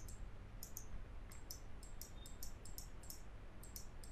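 Computer mouse button clicking repeatedly, about three quick clicks a second, as short brush strokes are dabbed on. A faint low hum sits underneath.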